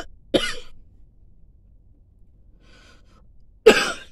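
A woman coughing from an irritated throat, mid coughing fit: one cough just after the start and a louder one near the end.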